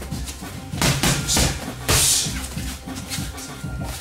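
Gloved strikes landing on Thai pads: three loud smacks in about a second and a half, the last the loudest, over background music with a steady beat.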